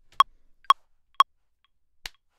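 Ableton Live's metronome counting in before recording: three identical short clicks, evenly spaced half a second apart.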